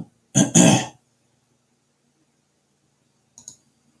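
A man clearing his throat: one loud, rasping, two-part burst lasting about half a second near the start. Two faint short clicks follow near the end.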